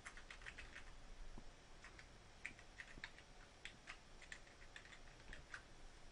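Faint typing on a computer keyboard, in short uneven runs of keystrokes.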